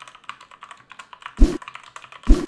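Fast typing on a computer keyboard: a quick, irregular run of keystrokes, with one louder, deeper thump about one and a half seconds in.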